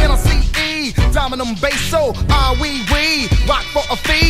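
Hip hop track in a live DJ blend: a rapped vocal over a heavy bass beat.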